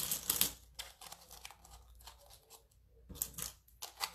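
Small toy gold coins clicking and clattering as they are handled and dropped into a small pot: a quick cluster of clicks at the start, then scattered light clicks, and another short flurry a little past three seconds.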